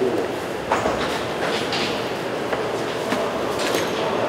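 A steady rushing background noise, with a few faint clicks and knocks scattered through it.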